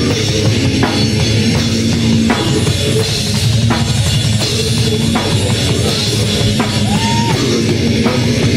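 A heavy metal band playing loud and live, with the drum kit to the fore: a fast, dense kick-drum pattern from a double pedal runs under the band, with an accent hit about every second and a half.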